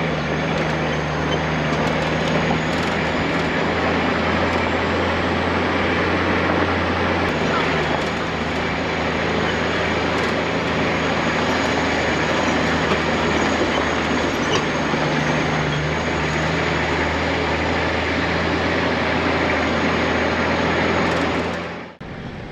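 Four-wheel drive's engine running steadily as it climbs a rough, rocky dirt track, with a constant low drone under road noise from the tyres on loose stone. The drone shifts slightly about a third of the way in.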